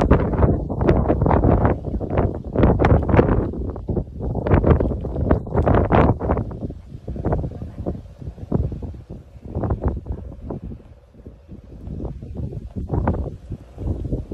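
Wind buffeting the microphone in gusts, heavier in the first half and easing off after about seven seconds.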